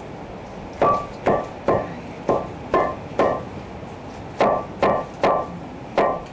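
A hand pounder striking down into a giant clam shell bowl, about two blows a second, each with a short ringing tone from the shell. Six blows come, then a pause of about a second, then the pounding resumes.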